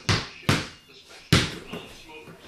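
A basketball being bounced three times: two bounces about half a second apart, then a third a little under a second later.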